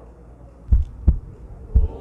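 Heartbeat sound effect: pairs of low, deep thumps, the beats repeating about once a second, starting a little under a second in.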